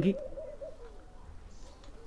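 A dove cooing in low, wavering notes, heard once at the start and again near the end.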